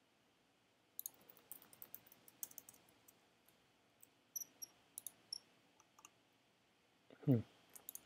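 Computer keyboard and mouse clicking in quick, irregular runs, starting about a second in and thinning out after about six seconds.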